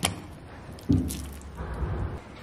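A sharp click, then about a second in a Bubba cordless electric fillet knife's motor starts with a low hum, runs for about a second and fades.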